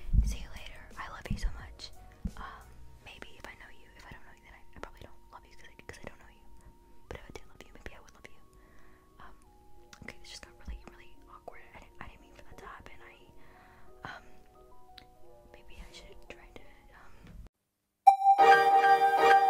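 A woman's faint whispering over quiet background music of slow held notes that step from one pitch to the next, with small clicks and rustles. A low thump comes right at the start.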